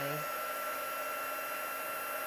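Craft heat gun running steadily: a constant rush of blown air with a faint steady high whine.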